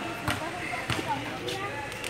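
A basketball bouncing on a hard outdoor court, three bounces at an even pace about half a second apart, over children's chatter.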